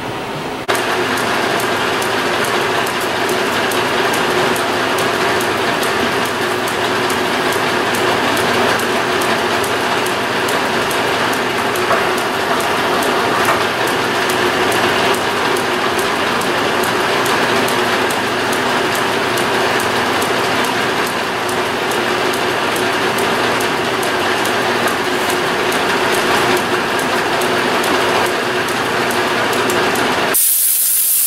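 Hamilton metal lathe running: a steady machine hum with a quick, even clatter of its gears. It starts turning about a second in.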